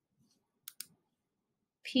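Two quick computer mouse clicks, about a tenth of a second apart.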